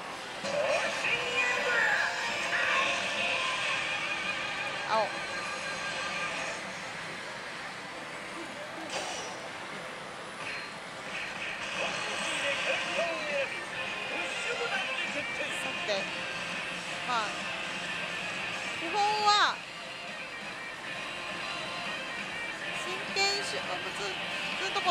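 Pachislot machine music and electronic sound effects over the steady din of a pachinko parlor, with a brief louder effect with a sliding tone about 19 seconds in.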